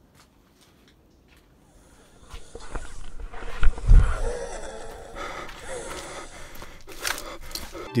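Raspy, wheezing breathing, like an asthmatic person gasping for an inhaler, rising out of near silence about two seconds in. A heavy low thump comes about four seconds in.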